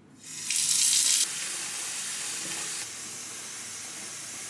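Water running from a bathtub tap as it is turned on: a louder gush for about a second, then a steady flow.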